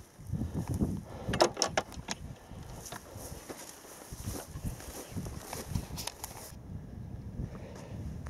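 Wind buffeting an outdoor camera microphone, with handling noise and a few short clicks about one and a half seconds in.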